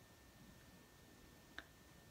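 Near silence: room tone, with one short faint click near the end.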